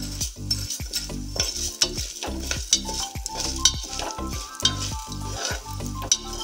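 Metal spoon stirring and scraping split lentils around the bottom of an aluminium pressure cooker as they roast with cumin and a dried red chilli, in repeated short scrapes with the grains rattling against the pot.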